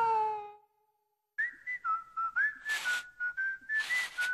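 The end of the music fades out, then a short silence. From about a second and a half in, a whistled jingle plays: one high tune of short notes with slides between them, and a couple of airy swishes.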